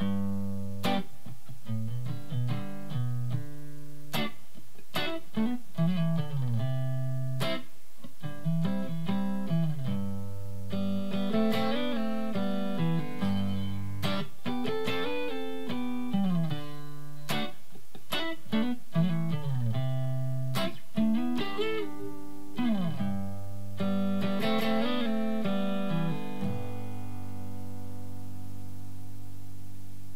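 Stratocaster-style electric guitar playing an R&B-style rhythm part in G: strummed chords alternating with picked two-note riffs that slide up and down the neck. It ends on a chord left ringing for the last few seconds.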